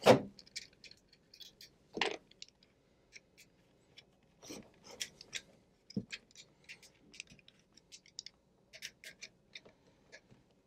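Small irregular clicks, taps and scrapes of a screwdriver and wire ends as wires are refastened to the screw terminals of a plug-in transformer, with a few louder knocks.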